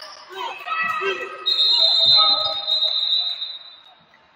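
Referee's whistle: one long, steady, high blast starting about a second and a half in and lasting over two seconds, the loudest sound here, stopping play. Before it there are shouts from players and spectators in the gym.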